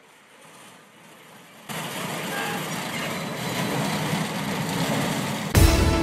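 A faint hush, then from about two seconds in a steady noise of vehicles outdoors. Just before the end a loud news-programme music sting with heavy bass hits cuts in.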